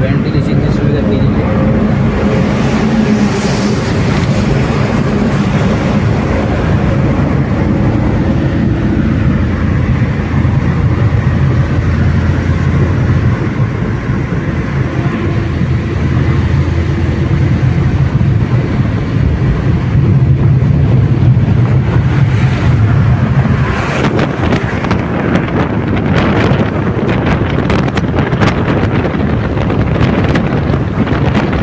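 Car driving through a road tunnel, heard from inside the cabin: a steady low engine and tyre drone. Wind buffets the microphone in the last few seconds.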